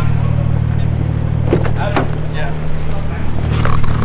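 Ford FG Falcon taxi's engine idling steadily: a deep, even hum.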